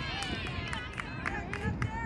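Several voices shouting and calling at once during a youth soccer match, with a run of short sharp taps.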